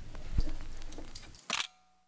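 Handling noise of the recording device as the clip ends: a low thump about half a second in and faint rustling, then a sharp click at about a second and a half, after which the sound cuts off to dead silence.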